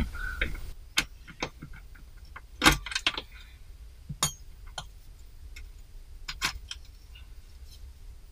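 Irregular metallic clicks and clinks of a socket wrench and the steel fuel-filter retainer being undone and lifted off, the loudest about two and a half seconds in.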